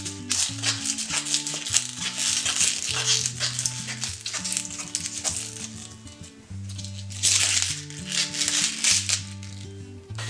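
Background music under the crinkling and tearing of kale leaves as they are pinched and pulled off their stems by hand. The crackling grows louder about seven seconds in.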